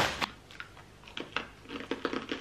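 A few faint, crisp crackles and clicks from a bag of spiced simit chips being handled and the hard chips crunched.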